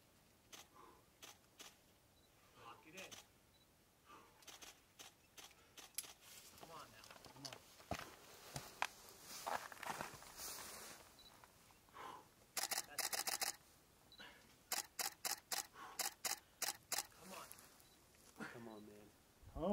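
Faint sharp clicks, scattered at first, then in quick regular runs: about half a dozen in a row past the middle, and a longer run near the end.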